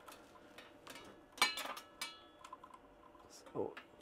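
Electrical cables being handled and pushed through a bundle of wiring: light rustling and scattered clicks, loudest about a second and a half in.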